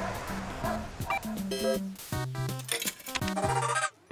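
Retro 8-bit arcade-game music: a melody of short, steady, buzzy notes over a stepping bass line. A man's voice says "I'm gonna" partway through, and the music cuts off suddenly at the end.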